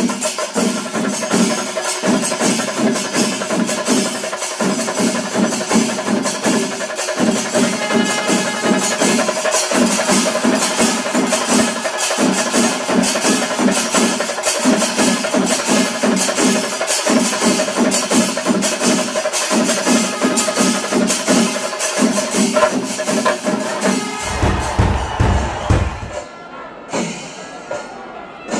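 Ilanjithara melam, a Kerala temple percussion ensemble: massed chenda drums beaten in a fast, dense rhythm, with kombu horns sounding in repeated blasts over a held high tone. Near the end a deep low rumble takes over.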